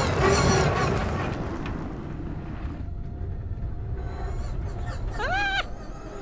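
Extreme E Odyssey 21 electric off-road SUV driving on a dirt track, with tyre and gravel noise loudest in the first second and fading after about three seconds. Near the end a short high tone rises and falls.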